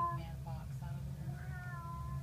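A cat meowing: one call tailing off at the start, short faint mews just after, and a longer call from about a second and a half in, over a steady low hum.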